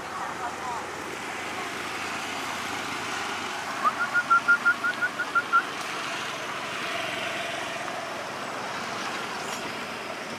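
A quick run of about ten short, high chirps, about six a second, lasting under two seconds near the middle, over a steady outdoor hiss.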